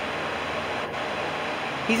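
Steady, even rushing background noise with no pitch to it, and one faint click about a second in.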